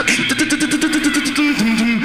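Beatboxing: a voice holding buzzing, humming bass notes that bend and break, over a fast run of sharp hi-hat-like mouth clicks.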